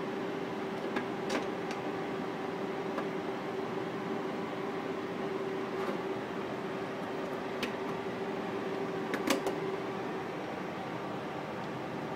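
Steady hum of projection-room machinery with a constant tone, and a few light clicks as parts of a 35mm projector's film path are handled during lacing.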